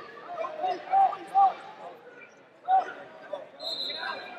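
Short shouted calls from voices in a large wrestling arena, in bursts of a few syllables, over steady hall background noise; a brief high tone sounds near the end.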